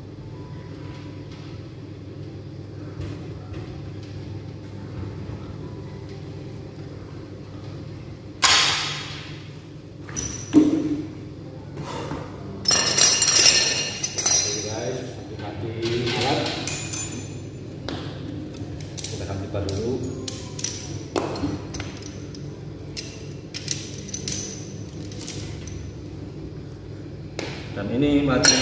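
Metal clinks and clanks from a gym cable machine's handle, clip and low pulley being handled, starting about eight seconds in over a steady low hum.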